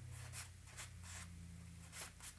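Compressed charcoal stick scratching across newsprint in short shading strokes, about four of them, the one in the middle a little longer, over a low steady hum.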